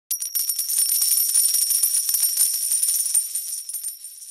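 Jingling intro sound effect: a high, sustained shimmer over a rapid patter of metallic clinks, fading out near the end.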